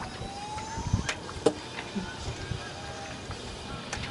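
Sailcloth and rigging on a sailboat under wind: irregular rustling with a brief rising squeak in the first second and a few sharp knocks, the loudest about a second and a half in.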